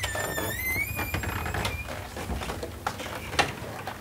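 A door's hinge squeaking in one long, slowly rising squeal as the door is pushed open, followed by a few light knocks.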